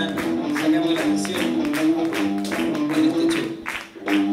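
Live rock band playing an instrumental passage: sustained guitar chords over a steady drum beat, with a brief drop just before the end before the band comes back in.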